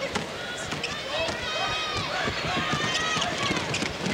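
Basketball shoes squeaking in many short high-pitched chirps on a hardwood court as players run, with a ball bouncing, over arena crowd noise.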